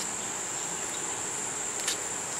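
Insects keeping up a steady high-pitched drone, with a faint click at the start and another near the end.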